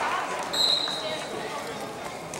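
A wrestling shoe squeaking once on the mat as a wrestler shifts his feet: one brief, high-pitched squeak about half a second in. It sounds over steady gym crowd chatter.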